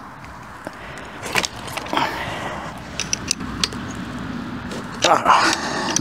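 Metal wrench clicking and scraping on a very tight nut at the end of an e-bike's front fork as it is worked loose. A brief voiced sound comes near the end.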